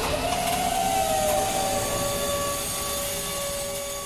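Sound effect in a hip-hop DJ mix: a rushing noise that starts suddenly, with one held tone that slides up, then settles a little lower and slowly fades.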